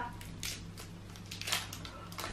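Hershey's Gold candy bar wrapper being torn open by hand: faint crinkling and rustling with a few soft crackles, the loudest about a second and a half in.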